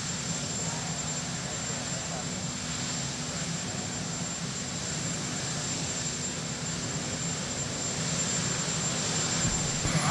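Marine One, a Sikorsky VH-3D Sea King helicopter, running on the ground with its turbine engines and rotor making a steady noise that grows a little louder near the end.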